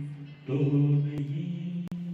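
A man singing a song into a handheld microphone in long, drawn-out notes. The note breaks off briefly a quarter of the way in, comes back, and steps up a little in pitch past the middle.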